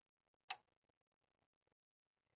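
Near silence, broken by a single faint, short click about half a second in.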